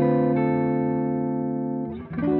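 Clean electric guitar chords on an Eastman thinline semi-hollow guitar played through a Hamstead amp. A chord is struck about a third of a second in and rings on, slowly fading.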